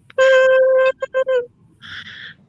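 Air horn blast: one long blast of a single steady tone, then three short blasts in quick succession.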